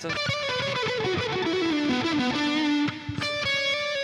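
Distorted Stratocaster-style electric guitar playing a fast legato lick of hammer-ons and pull-offs that steps down in pitch, then settling on a held note about three seconds in.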